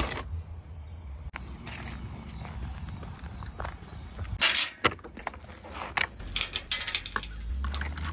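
Light metallic clinking and jangling of handled hardware in a cluster of sharp clicks through the second half, over low handling and walking noise.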